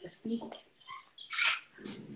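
A woman's voice in short bursts: a brief word at the start, then a sharp breathy sound about a second and a half in and more voice near the end.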